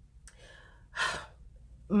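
A woman's single audible breath about a second in, short and unpitched, like a quick gasp or sigh between sentences, with faint mouth noise before it.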